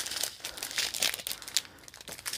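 Small plastic bags of diamond-painting drills crinkling as they are handled, in irregular crackles that thin out near the end.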